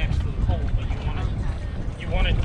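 Low rumbling wind noise on the microphone over open water, with a voice heard briefly about half a second in.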